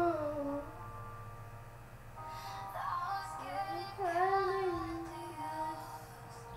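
Singing over music without clear words: a sung note gliding down and ending about half a second in, then a new phrase from about two seconds in that rises and falls before trailing off near the end, over a steady low backing.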